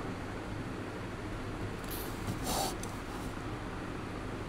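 Pen scratching on paper as a word is written, heard as a couple of short scratchy strokes about halfway through, over a steady low room hum.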